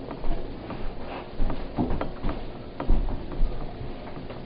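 Scattered, irregular clicks and knocks, about eight of them at uneven intervals, over faint room noise.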